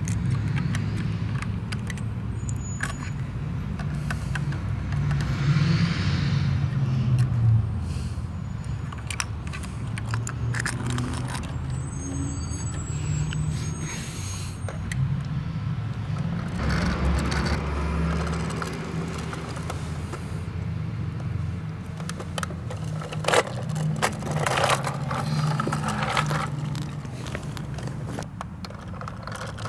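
Garbage truck engine running steadily at a low rumble, with scattered metallic clatter and scraping throughout.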